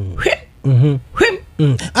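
Speech only: a voice talking in short phrases with brief pauses between them.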